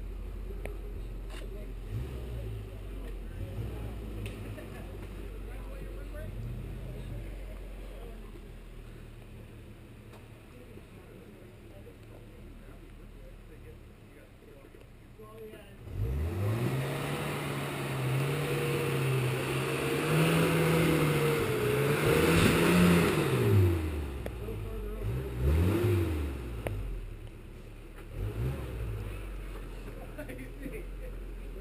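Off-road 4x4 truck engine running low for the first half, then revving hard suddenly about halfway through. The revs are held, wavering, for several seconds as the truck climbs the rock, then drop, with two shorter blips of throttle near the end.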